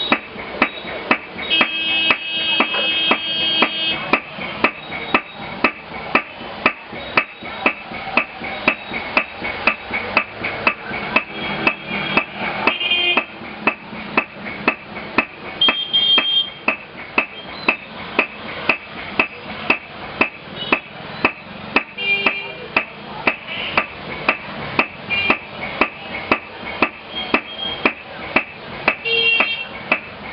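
Steady rhythm of hammer blows, about two a second, beating gold or silver leaf between papers in a leather packet.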